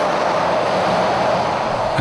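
A Scania truck and semi-trailer driving past on asphalt: a steady rush of tyre and road noise, with little engine sound.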